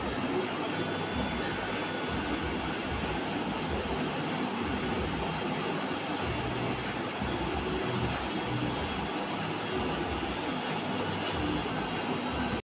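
A steady machine whirring, even and unbroken throughout.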